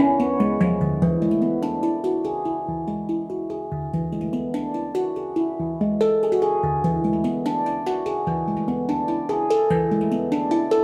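Yishama pantams (handpans) played with the hands in a melodic solo: struck steel notes ringing and overlapping. The strikes thin out and soften for a few seconds, then quicker, brighter strikes return about six seconds in.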